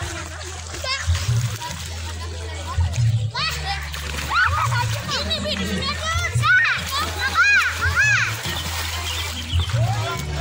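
Children calling and shouting in a swimming pool with water splashing; the high excited voices start about three seconds in, over background music with a low repeating beat.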